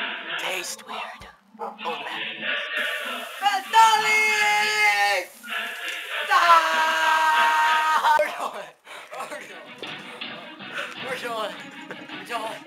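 Background music, with a man's long yell falling steadily in pitch about four seconds in, then a second long held cry a little later.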